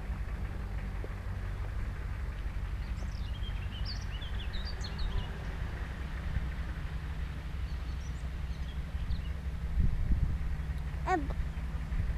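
The 1.9-litre water-cooled flat-four (WBX) of a 1986 VW T3 Syncro van running at low revs as it crawls off-road, a steady low rumble that grows louder near the end as the van comes closer. Birds chirp a few seconds in, and a short call falling in pitch is heard shortly before the end.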